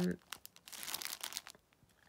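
Clear plastic packet around a cotton face mask crinkling as it is handled: a run of short crackles that dies away after about a second and a half.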